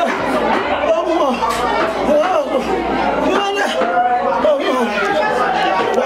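Voices talking continuously, several people overlapping in chatter.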